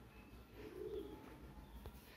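Faint cooing of a pigeon about half a second to a second in, over quiet room tone.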